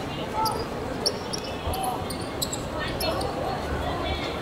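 A football being kicked and bouncing on an outdoor hard court, a few sharp thuds, with players calling out during play.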